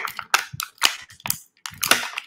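Clear plastic toy packaging crackling and clicking as it is handled: an irregular run of sharp cracks, about eight in two seconds.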